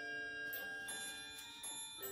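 Background music of slow, ringing, bell-like notes that overlap and sustain, in the manner of a glockenspiel.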